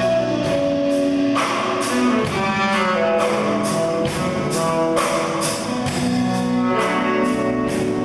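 Live band playing an instrumental passage: electric guitars over a drum kit, with steady cymbal strokes at about two a second.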